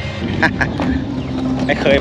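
A vehicle engine running with a steady hum, with a man's voice over it.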